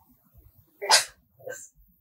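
One sudden, sharp burst of breath and voice from a woman about a second in, followed by a fainter one about half a second later.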